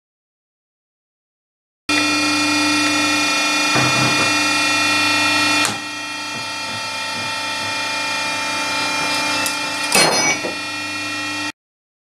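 Electric hydraulic pump of a tensile test bench running with a steady multi-toned hum, starting abruptly about two seconds in and dropping slightly in level just before six seconds. Short sharp noises come at about four and ten seconds in, the later one the loudest, and the hum cuts off suddenly near the end.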